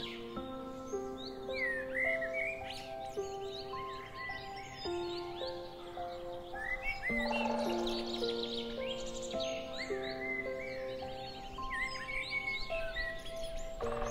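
Calm background music of slow, long-held notes, with birdsong chirping over it.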